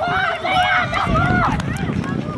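Men's voices shouting on a football pitch in long, raised, held calls, over a low rumble.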